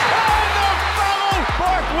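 Arena crowd roaring as a buzzer-beating basket goes in, under a commentator's excited shouting, with background music beneath.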